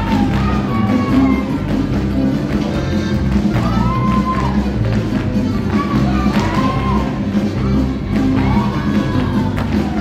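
Live norteño band playing a polka, with a steady bouncing bass beat under a melody line.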